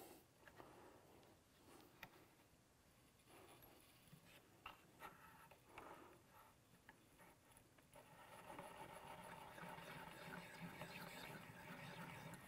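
Mostly near silence with a few faint clicks, then from about eight seconds in a faint, steady scraping as the hand-cranked Forster Original Case Trimmer turns, its cutter shaving the outside of a brass case neck.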